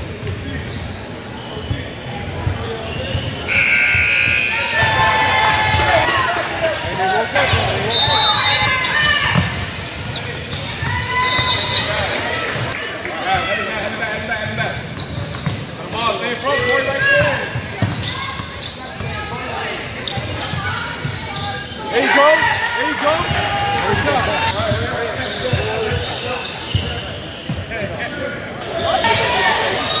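A basketball being dribbled on a hardwood gym floor, bouncing repeatedly, under the shouts and calls of spectators and players in a large, echoing gym.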